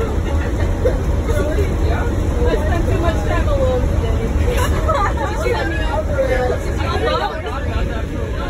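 Steady low rumble of a moving school bus heard from inside the cabin, under the overlapping chatter of many passengers.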